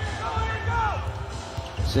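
Basketball being dribbled on a hardwood court during an NBA game, over steady low arena background noise.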